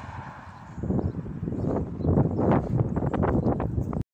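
Handling noise on a phone's microphone: a rapid, irregular run of knocks and rubbing as the phone is moved about.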